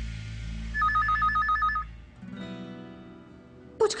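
Telephone ringing for an incoming call: one burst of about eight rapid two-tone electronic pulses, followed by a soft background music chord.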